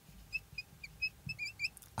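Marker squeaking on a whiteboard as words are written: a string of short, high squeaks, several a second, some sliding up or down in pitch.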